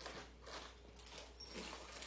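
Faint, irregular soft rustles and shuffles from a puppy moving about.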